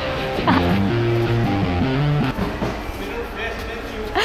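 Background music: a short phrase of held notes that step in pitch and end about two and a half seconds in.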